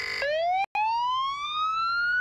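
Police siren: a short steady buzzing tone, then a slow rising wail that climbs steadily in pitch, with a split-second dropout near the start.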